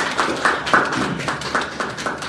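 Audience applauding, many hands clapping at once.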